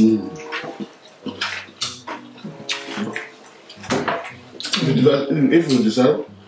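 Close-up wet chewing and mouth sounds of people eating, with short clicks and smacks throughout. Short voiced sounds come in at the start, about halfway, and more strongly in the last second and a half.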